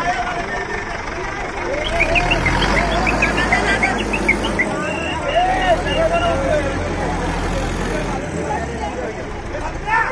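A heavy vehicle engine running steadily under crowd chatter and shouting. The low drone comes in about two seconds in and stops about eight seconds in.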